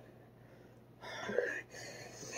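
Near silence for about a second, then soft, breathy, unvoiced laughter from a boy holding a very hot chip to his mouth.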